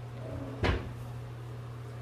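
A single sharp knock, a bit over half a second in, over a steady low hum.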